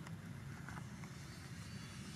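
A steady low rumble of background noise, with a faint short sound about two-thirds of a second in.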